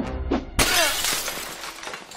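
A falling jar crashing and shattering, with a sudden loud smash about half a second in that trails off over about a second, over music.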